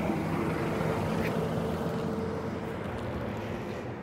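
Bus running on the road close by: engine and road noise with a steady whine that drops out about halfway through, the whole sound slowly fading.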